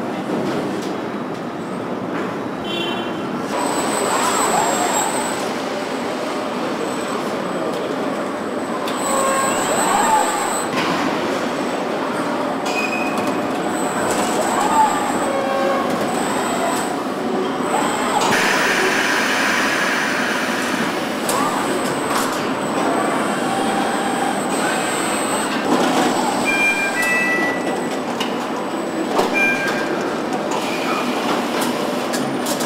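Car assembly-line machinery noise: a steady mechanical din with short high-pitched whines coming and going and occasional knocks, with faint voices.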